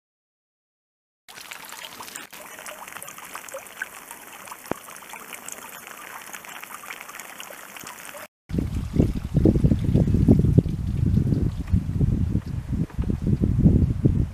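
Silent for about a second, then a fine crackling trickle of water draining through a net heaped with live whitebait. After a cut about eight seconds in, loud gusty wind rumble on the microphone takes over.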